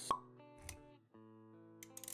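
Intro sound effects over background music: a sharp plop right at the start, the loudest thing here, then a soft low thump a little after half a second, followed by held music notes.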